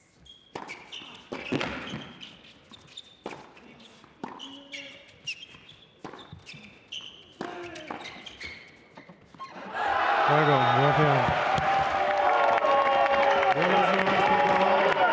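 Tennis doubles rally on an indoor hard court: a run of sharp racket-on-ball strikes and ball bounces with short shoe squeaks. About ten seconds in, a loud crowd cheer with shouting breaks out as the point is won and carries on.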